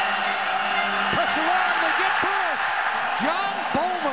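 Football stadium crowd cheering and shouting: a steady din of many voices, with single yells rising and falling in pitch throughout.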